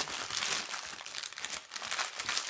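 Plastic kit packaging crinkling as it is handled, a run of irregular crackles.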